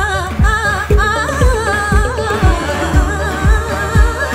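Female voice singing an ornamented South Asian melody with wide vibrato, over a drum beat of about two strokes a second with bass and keyboard.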